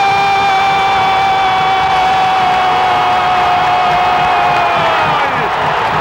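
Sports commentator's long, held goal cry of 'gol', one sustained shout that sags slightly and falls away about five seconds in, with a new held cry starting right at the end. A stadium crowd is cheering underneath.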